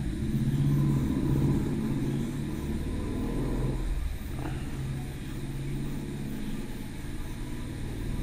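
A low, steady engine-like rumble, strongest in the first few seconds and easing off after about four seconds.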